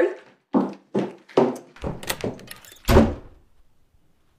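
A quick series of about six dull thuds and knocks, the loudest about three seconds in, like hurried bumping or heavy impacts.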